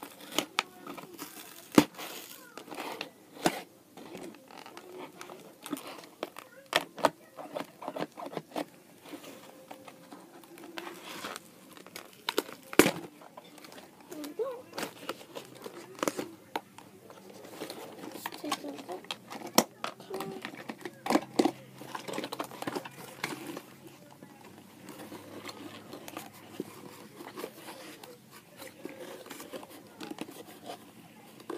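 Plastic and cardboard toy packaging being handled and opened by hand: irregular clicks, knocks and crinkling, with a few sharper knocks, the loudest about two and thirteen seconds in.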